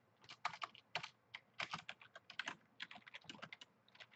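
Typing on a computer keyboard: irregular runs of quick keystrokes, with a brief pause shortly before the end.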